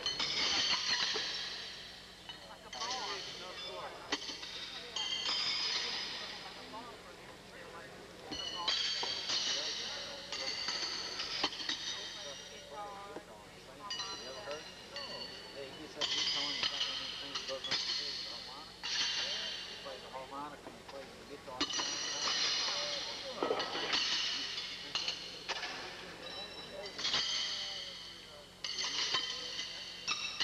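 Steel pitching horseshoes clanging against iron stakes and one another on several courts, a high ringing metallic clang every second or so, over indistinct crowd chatter.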